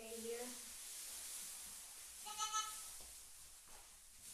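Doe goat bleating just after kidding: a call that ends about half a second in, then a short, higher-pitched bleat about halfway through, the loudest sound.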